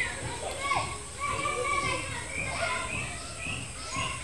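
Several children's voices overlapping, calling and chattering.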